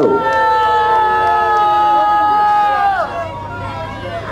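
A person's long drawn-out shout, held on one high pitch for about three seconds and dropping off at the end, over crowd chatter.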